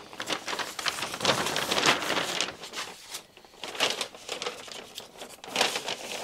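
A large paper plan sheet being picked up and handled, rustling and crinkling in irregular bursts.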